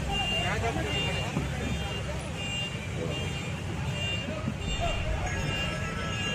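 Diesel engine of a backhoe loader running steadily at work on demolition rubble, with people's voices in the background.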